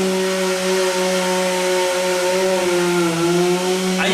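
A motor droning steadily with a low hum, its pitch sagging slightly about three seconds in.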